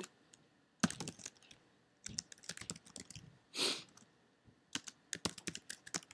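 Computer keyboard keys being typed in quick irregular spurts of soft clicks, pausing briefly a little past halfway. A short soft rush of noise comes just past the middle.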